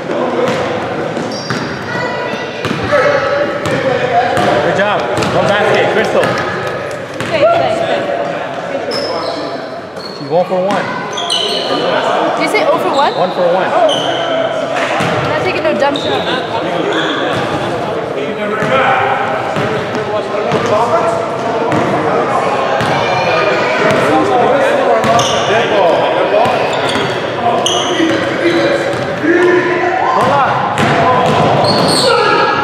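Basketball game on a hardwood gym floor: the ball bouncing as it is dribbled, sneakers squeaking in short high chirps, and players calling out indistinctly, all echoing in the large hall.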